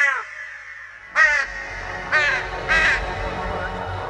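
Crow-like caws from a cartoon bird-man who has just been struck dumb and can now only caw: one harsh caw at the start, then three more from about a second in, over a low music bed.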